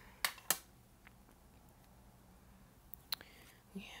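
Plastic cassette tape case clicking as it is handled: two sharp clicks close together, then a couple of lighter clicks about three seconds in.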